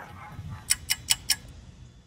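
Four light, quick clicks about a fifth of a second apart over a faint low rumble.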